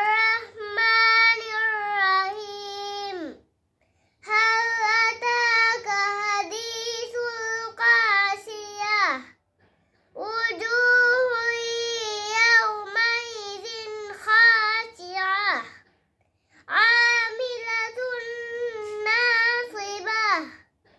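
A young girl reciting the Qur'an aloud in Arabic, in the melodic chanted style of tajweed recitation. She holds long notes with ornamented turns, in four phrases separated by short pauses.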